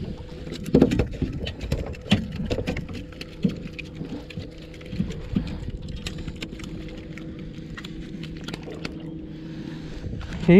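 Sharp clicks and knocks of a caught lizardfish and terminal tackle being handled on a boat, thickest in the first three seconds and scattered after, over a steady low hum.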